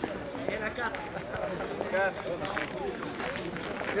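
Men's voices talking outdoors, with footsteps on loose gravel as players walk across the pétanque terrain.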